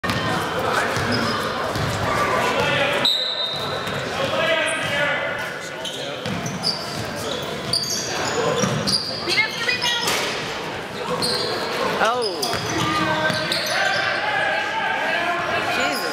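Basketball bouncing on a hardwood gym floor during play, with players' and spectators' voices echoing in the large hall.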